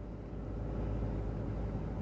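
Steady low hum of a vehicle's idling engine, heard from inside the cabin.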